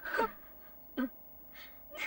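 A person's short gasps and sighs: a few brief, breathy vocal sounds, the first falling in pitch.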